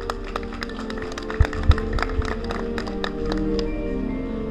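Marching band playing in a gymnasium: held chords under a dense run of sharp percussion taps and clicks, with two heavy low hits about a second and a half in.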